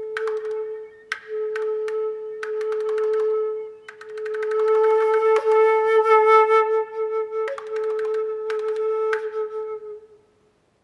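Concert flute holding one steady note, broken briefly twice and fuller and louder in the middle, while sharp percussive clicks land on the tone roughly once a second: the flute played as a percussive instrument.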